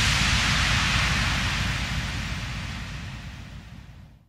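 A white-noise effect in an electronic dance track, with no beat under it. It fades steadily from the start and dies out near the end.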